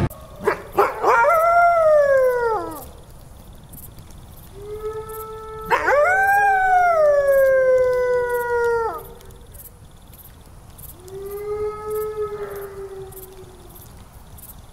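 Canine howling, like wolves: three long howls. The first opens with short rising yelps, then slides down over about two seconds. The second has two overlapping voices, one held steady and one falling. A softer third howl comes near the end.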